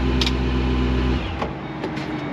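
A 2007 Shelby GT500 Super Snake's supercharged 5.4-litre V8 idling, then switched off a little over a second in, its low hum cutting out suddenly. A few light clicks follow near the end as the driver's door is unlatched.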